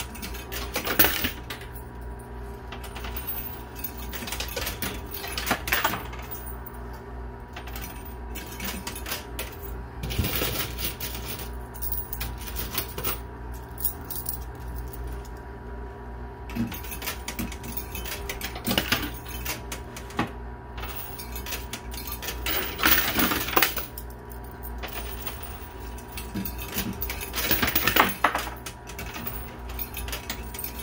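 Quarters dropped into a coin pusher arcade machine, clinking onto the piled coins on the playfield, with louder bursts of clinking every few seconds over a steady hum.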